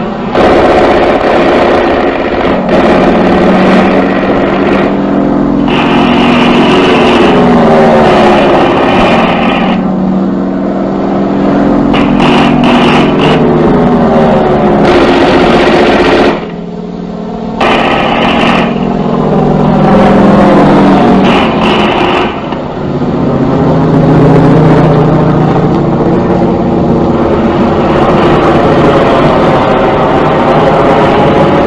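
Propeller-driven warplane engines droning loudly, their pitch sweeping up and down again and again, with a short drop in level a little past halfway.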